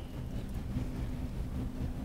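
Quiet room tone: a steady low rumble with a faint, even hum.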